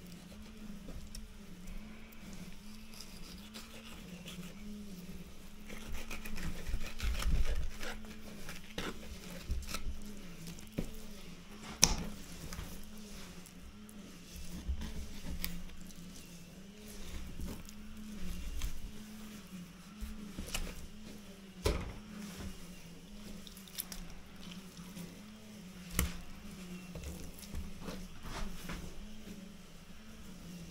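Fillet knife cutting a cod on a cutting board: wet squishing and scraping of the blade through flesh, with a few sharp knocks of the knife on the board, the loudest about twelve seconds in. A steady low warbling hum runs underneath.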